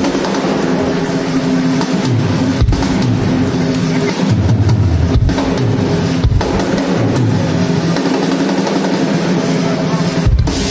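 Live band music played through PA speakers: an electric bass line moving under sustained held chords, with a few scattered drum hits.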